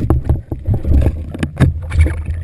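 Muffled underwater rumbling of water with sharp knocks, heard through a GoPro's underwater housing during a speargun shot on a small cero mackerel; one knock stands out about one and a half seconds in.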